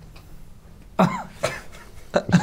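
A man coughs once, a short sudden splutter about a second in, after a second of quiet room tone.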